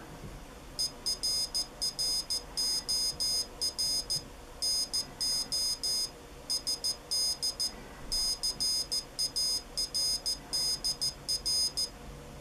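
Piezo buzzer of a homemade electronic Morse keyer beeping out Morse code, a high-pitched tone keyed on and off in dots and dashes starting about a second in. It is the keyer's error message that the SD card is not found.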